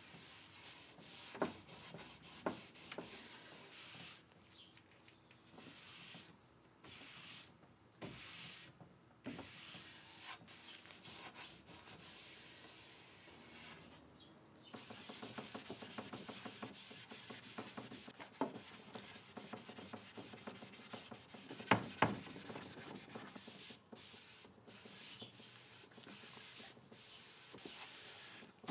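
Cloth and paper towel rubbing across wood veneer drawer fronts, wiping white gel stain on and the excess off. The strokes come in separate swipes at first and run on more steadily later, with a few light knocks and one sharper knock a little past the middle.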